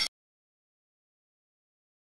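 Dead silence, after a swelling musical intro sting cuts off abruptly right at the start.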